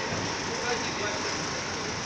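Steady city street traffic noise as cars and a van drive past, with indistinct voices mixed in.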